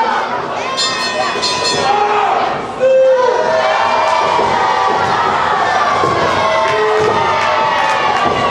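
Wrestling crowd cheering and shouting, with many high children's voices yelling over the din. It gets louder about three seconds in.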